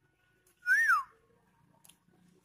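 A single short whistle, under half a second long, less than a second in: it rises briefly and then slides down in pitch.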